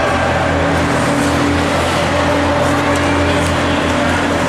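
Ice rink ambience during a hockey game: a steady low hum under an even hiss of skates on the ice, with a few faint clicks of sticks.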